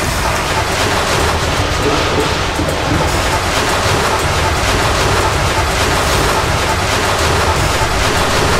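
Loud, steady rush of churning, splashing water that starts abruptly, as of a body plunged under water, with a film music score beneath it.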